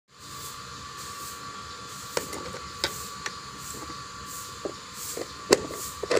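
A few sharp plastic clicks and knocks as the lid of a plastic pull-cord vegetable chopper is handled and fitted, the loudest a little before the end. Under them is a steady background hum with a thin high tone.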